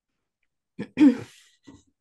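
A woman clears her throat once, about a second in.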